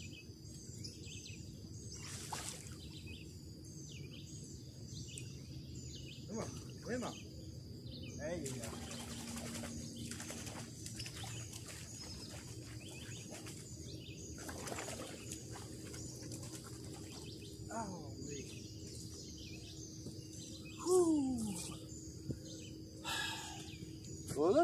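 Songbirds chirping over and over against a steady high-pitched drone, with a few brief murmurs from a man's voice and a short rustling burst near the end.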